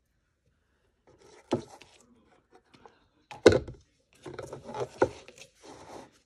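Hands moving a covered craft box and glitter foam balls about on a tabletop: a few knocks and rubbing scrapes, the loudest knock about three and a half seconds in, and a busier run of handling after it.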